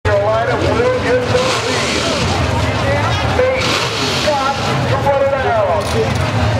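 Drag cars' engines idling at the starting line, a steady low rumble, with people's voices over it.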